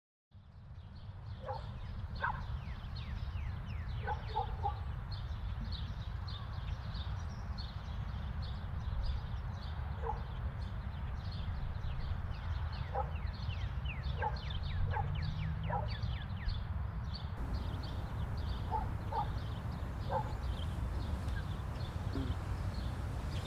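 Outdoor morning ambience: many small birds chirping in quick high downward sweeps, with short lower animal calls now and then, over a steady low rumble.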